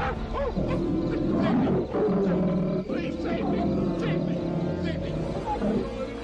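A large animal roaring and growling continuously over film score music.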